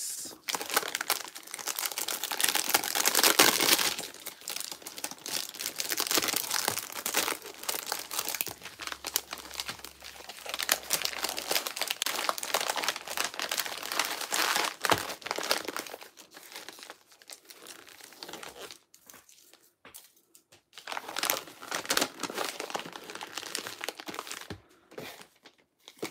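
Clear plastic sleeve and paper padded mailer crinkling and rustling as a wrapped binder is handled and slid into the mailer. The crinkling is loudest a few seconds in, then thins to a few short rustles near the end as the mailer is pressed flat.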